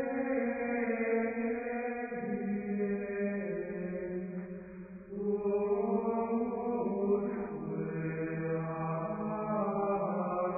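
Slow sung chant with long held notes in a slowly moving melody, broken by a short pause about five seconds in.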